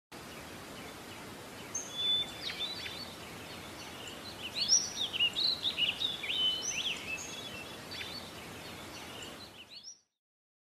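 Several small birds chirping and singing over a steady background hiss, busiest in the middle, with the sound cutting off suddenly at the end.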